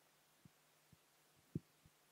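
Near silence: room tone with a faint low hum, broken by a few soft, brief low thumps, the loudest about one and a half seconds in.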